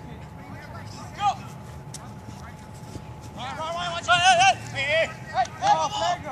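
Men shouting and yelling during a flag football play. There is one short shout about a second in, then loud, high-pitched, wavering yells from about three and a half seconds in to the end.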